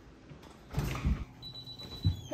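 Apartment front door being unlocked with a key and opened: a loud clatter and clunk of the lock and latch about three-quarters of a second in, then a thin, high, steady squeak.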